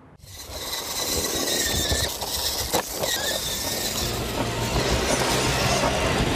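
A loud, steady vehicle noise that fades in over the first second, with a sharp knock about three seconds in.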